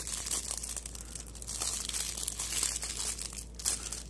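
Clear plastic bag around a fidget spinner crinkling as it is turned over in the hand, an irregular run of small crackles.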